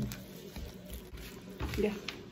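Faint, soft sounds of a red plastic fork stirring and lifting saucy instant noodles on a foil plate.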